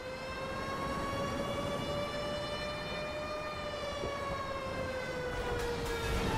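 Civil-defence air-raid siren wailing, its single tone rising slowly and then falling back. A low rumble begins to build near the end.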